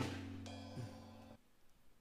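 Drum kit struck and left ringing, with a second, brighter hit about half a second in. The ringing dies away by about a second and a half in.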